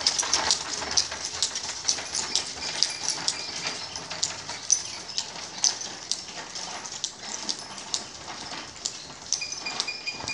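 Bullock cart moving away down a paved lane: an irregular run of sharp clicks and clatters from the wooden cart and its ox, slowly fading as it goes.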